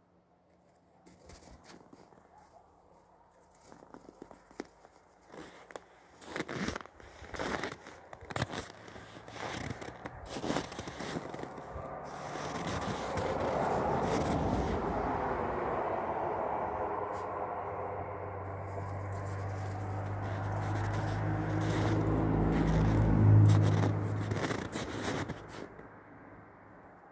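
A red fox chewing and tearing at a soft toy on snow: irregular crackling and scraping clicks. From about halfway a steady low droning hum swells in, loudest near the end, then fades.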